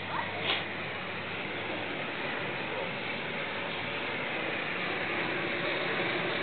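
Steady rushing noise of a moving chairlift ride, slowly growing louder, with a brief click about half a second in.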